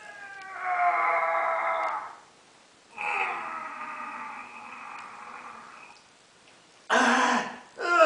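A man's voice straining with mock effort, no words: a held strained sound about half a second in, a longer one from about three seconds that fades away, then two short, loud bursts of breath near the end, as he pulls a telescoping metal rod out.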